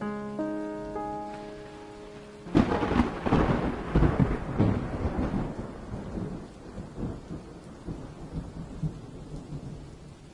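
The last held notes of a song fade out. About two and a half seconds in, a sudden loud rumble of thunder breaks in over the hiss of rain, rolls on in waves and slowly dies away.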